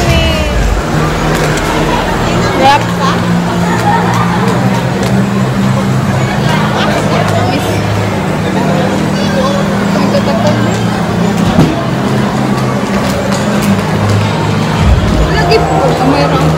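Mall ambience: background music with a low bass line stepping between notes, under the chatter of people around.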